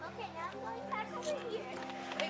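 High-pitched children's voices calling out and chattering, over background music of steady held chords.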